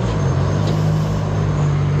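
Road traffic: the low, steady engine hum of passing motor vehicles, its pitch dipping briefly just after the start and then holding.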